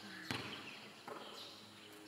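Basketball bouncing on a concrete court, two faint bounces about three quarters of a second apart, as the ball is dribbled before a shot.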